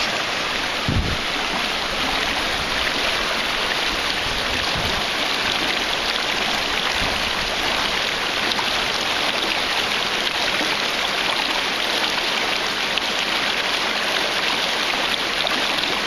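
Shallow rocky stream rushing and splashing around boulders close by, a steady hiss of fast water. A short low thump about a second in.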